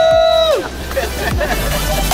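Two voices shouting a long, drawn-out cheer of "woo!", each held on one pitch. They stop about half a second in, leaving background music.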